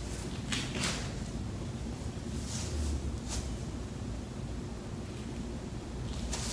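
Clothing rustling as a black mesh bikini top is handled and pulled on: a few brief soft brushing sounds over a low room hum.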